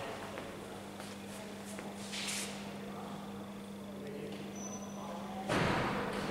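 Low murmur of people talking in a gallery room over a steady low hum, with a short hiss about two seconds in. A sudden loud, noisy burst breaks in near the end.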